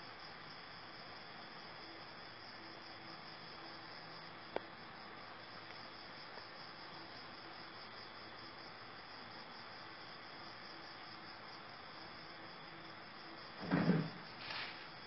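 Crickets and other night insects chirring faintly and steadily. A single sharp click comes about four and a half seconds in, and a brief thump of movement near the end is the loudest sound.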